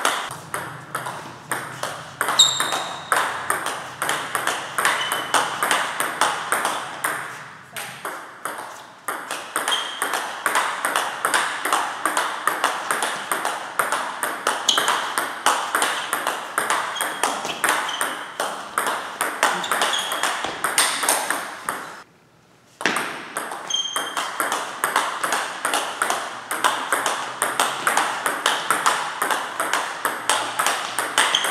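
Table tennis rally in a blocking drill: the celluloid-type ball clicks off rubber-faced rackets and bounces on the table at about four strikes a second. The rally stops briefly a little past two-thirds through, then starts again.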